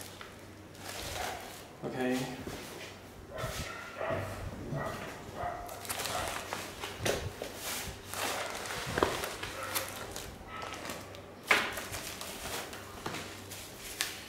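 Plastic packaging being handled and unwrapped: an inflatable air-column bag, a plastic bag and bubble wrap rustling and crinkling in irregular bursts, with one sharp, loud crackle about three-quarters of the way through.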